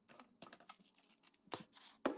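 Faint scattered clicks and rustles of hands handling silver rings close to the microphone, with a slightly louder click about one and a half seconds in.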